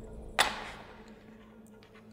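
A single sharp click about half a second in, from small setup tools being handled on an RC touring car's chassis during downstop adjustment, followed by a few faint ticks near the end.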